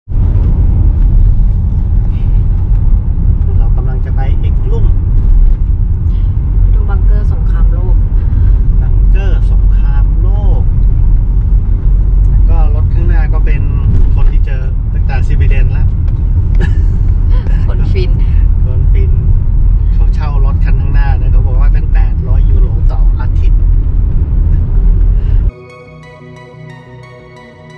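Road and wind noise inside the cabin of a moving Ford Grand Tourneo Connect van: a loud, steady low rumble, with voices talking over it. It cuts off suddenly just before the end.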